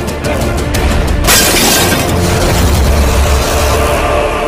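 Dramatic film-trailer music with a heavy bass. About a second in, a sudden loud crash-like hit of noise comes in and fades out over the next couple of seconds.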